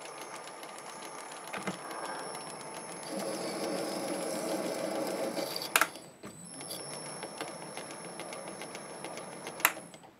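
MN-80 small lathe running while a single-point tool cuts an internal M33×1.5 thread in a brass nut, a steady machine sound with a faint high whine. It stops with a sharp click a little under six seconds in, runs again about half a second later, and stops with another sharp click just before the end.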